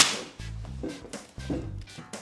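A single sharp, whip-like crack right at the start, fading over about a third of a second, then a low bass beat from background music.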